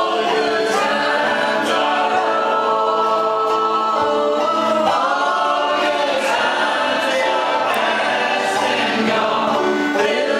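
A group of voices singing together in harmony, holding long chords that change every couple of seconds.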